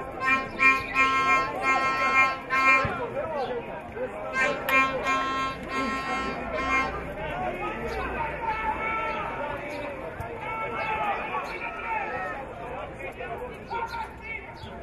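A horn sounds in runs of short repeated blasts, one run in the first three seconds and another from about four and a half to seven seconds in. Spectators' voices shout and chatter over it, and carry on alone after the horn stops.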